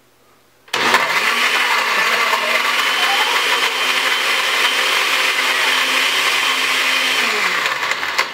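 Countertop blender switched on under a second in, its motor running steadily at speed as it blends ice cubes with orange juice concentrate and milk. About seven seconds in it is switched off and the motor winds down, falling in pitch.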